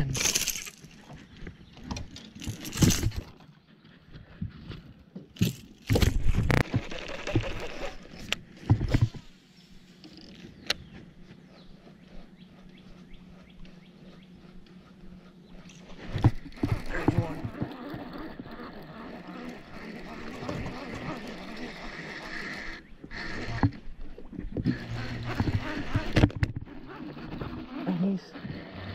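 Irregular knocks and thumps from handling on a small fishing boat's deck, loudest in the first half, with a steady low hum underneath in the quieter middle stretch.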